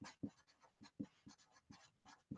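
Sharpie felt-tip marker writing capital letters on paper: a few faint, short, separate strokes.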